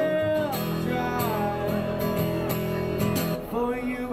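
Buskers' live acoustic guitar music: strummed chords under a held, gliding melody line.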